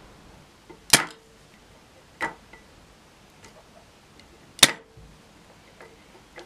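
Three sharp clicks, about a second in, at about two seconds and near five seconds, with a few fainter ticks between: needle-nose pliers and a soldering iron knocking against a guitar-pedal circuit board as wires are desoldered from its pads.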